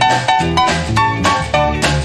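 A 1950s rhythm-and-blues band playing the instrumental introduction of a song: repeated chords with a bass line on a steady beat, about four strikes a second.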